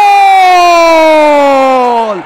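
A football commentator's long, loud drawn-out shout on one held note, sliding slowly down in pitch and ending after about two seconds: a sustained goal call after a shot beats the keeper.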